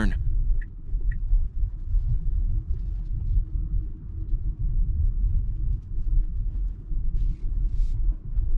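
Low, steady road and tyre rumble heard inside a 2023 Tesla Model Y's cabin with windows up, music and fans off, driving at low speed, with no engine sound.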